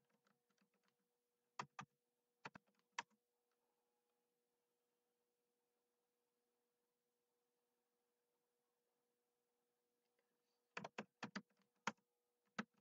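Typing on a computer keyboard. A few quick keystrokes come about two seconds in, then several seconds of pause, then a quick run of keystrokes near the end.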